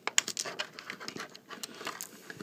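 Thin clear plastic blister tray crackling and clicking as small toy parts are pried out of it by hand: a rapid, irregular run of light clicks.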